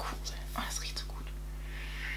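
A person sniffing a tube of hand cream near the end, after a few soft, breathy words.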